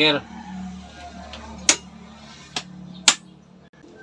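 Miniature circuit breakers being switched on by hand: three sharp clicks spread over about a second and a half, the last the loudest.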